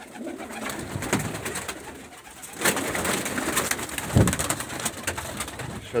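Domestic racing pigeons cooing in their loft, with a low coo about four seconds in, amid clicks and rustling from the birds moving about.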